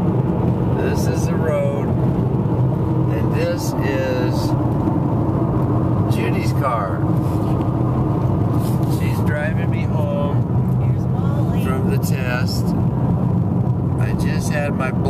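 Steady road and engine rumble inside the cabin of a car driving on a highway, with brief snatches of a voice over it every few seconds.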